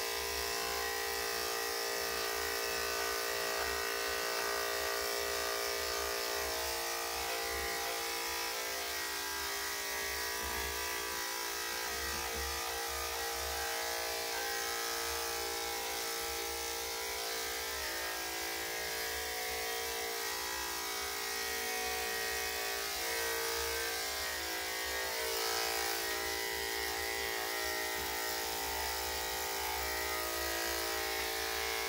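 Corded electric dog clippers with a #10 blade running in a steady buzzing hum while shaving a Yorkshire Terrier's body coat.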